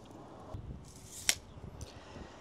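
Tape measure being retracted: the steel blade hisses back into its case and ends in one sharp snap about a second in, followed by a couple of faint clicks.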